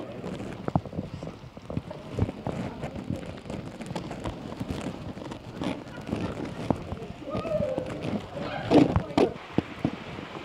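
Footsteps tapping and scuffing on rock as people climb over stone ledges, with people's voices now and then, loudest near the end.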